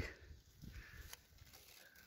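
Near silence: faint outdoor ambience with one light click about a second in.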